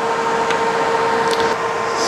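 Steady whirring hum of a switched-on Longevity Innovator 255i inverter welder, its cooling fan running with a steady mid-pitched tone, and a soft click about half a second in.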